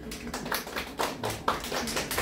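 Audience clapping after a song: sharp hand claps, about four a second, close to the microphone.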